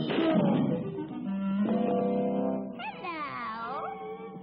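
Cartoon orchestral score with a sudden crash at the start as a fist smashes through a wooden phone-booth door. Held musical notes follow, and about three seconds in a short wavering, gliding sound.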